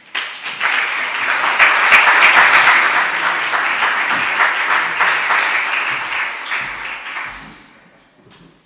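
Audience applauding: many hands clapping, starting at once, loudest a couple of seconds in, then slowly dying away near the end.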